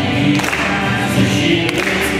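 A mixed group of men's, women's and children's voices singing together, holding sustained notes over a low instrumental accompaniment.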